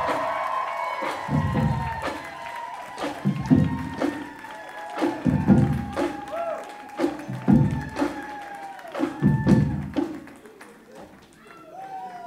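Drumline playing: a marching bass drum booms about every two seconds, with quick, lighter drum strokes in between.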